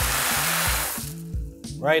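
Dry tubetti pasta pouring out of a cardboard box into a pan of boiling tomato liquid: a steady rush that stops about a second in.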